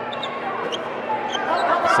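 Live indoor basketball game sound: a ball bouncing on the hardwood and a few short sneaker squeaks over steady arena crowd noise.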